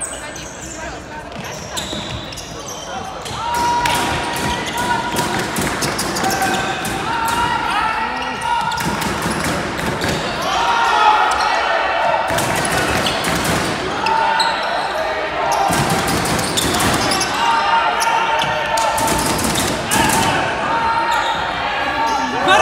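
Sneakers squeaking and footsteps on a hardwood sports hall floor as players run and cut, with shouts among them, echoing in a large hall. It grows louder a few seconds in.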